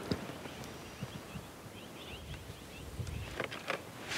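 Quiet outdoor ambience: a faint steady hiss with a few faint, short high chirps in the first half, and a few soft knocks and clicks of handling near the end.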